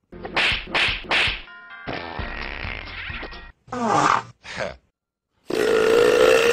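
Cartoon slapstick sound effects: three quick whacks, then a stretch of music, a short laugh, and near the end the start of a long, loud burp.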